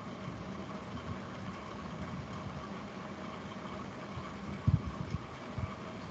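Steady machine-like background hum with faint steady tones, and a few short low thumps about five seconds in.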